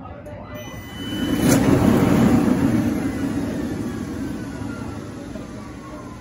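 Floor scrubber's motor noise swelling about a second in, then slowly fading with a whine that falls in pitch.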